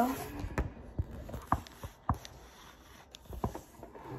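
Light, scattered clicks and knocks of a football helmet and its facemask being handled while a visor is readied to fit.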